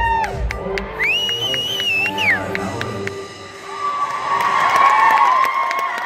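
Hip hop routine music whose heavy bass beat drops away about half a second in, followed by high-pitched whoops and audience cheering that swells over the last two seconds.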